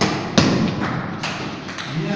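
Table tennis point: a heavy thud at the start and a louder one about half a second in, then several lighter taps of the celluloid ball.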